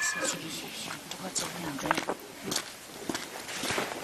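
Indistinct, faint talking mixed with scattered short clicks and scuffs.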